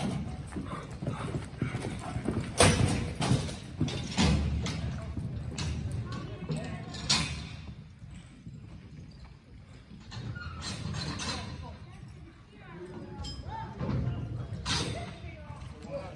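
Horses' hoofbeats on soft arena dirt as the horses move about, with a few sharper knocks mixed in.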